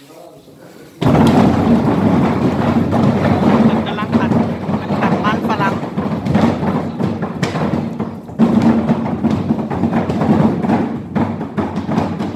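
Potato handling machine with a hopper and conveyor starting suddenly about a second in and running, with a steady motor hum under a dense clatter of potatoes knocking and tumbling. It dips briefly near the two-thirds mark, then carries on.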